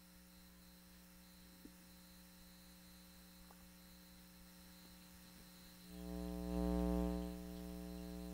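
Electrical mains hum on the broadcast audio line. It is faint at first; about six seconds in a much louder buzzing hum comes up, peaks about a second later and then settles a little lower.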